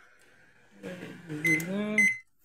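Microwave oven keypad beeping twice, short electronic beeps about a second and a half and two seconds in, over a man's voice.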